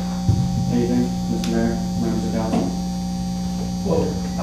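Steady low electrical hum on the recording, with quiet, indistinct voices talking under it and a couple of small clicks.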